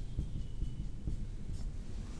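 Marker pen writing on a whiteboard: faint short scratching strokes over a steady low room hum.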